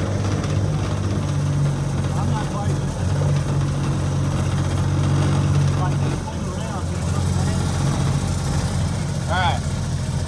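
Golf cart engine running steadily as the cart drives along, with a low even hum that settles a little lower about six seconds in. A brief high chirp sounds near the end.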